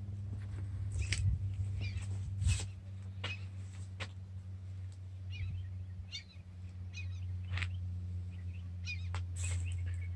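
Small birds chirping on and off, in short high calls, over a steady low hum, with a few sharp clicks scattered through.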